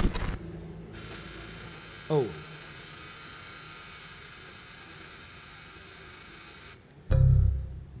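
Steady hiss of static from the sound system for several seconds as the presentation system glitches, then a short loud low burst of noise near the end.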